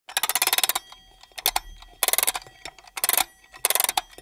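Rapid rattling clicks in four short bursts, the first the longest, with a few single clicks in between.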